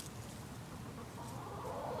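A hen calling, with a drawn-out sound that starts a little over a second in.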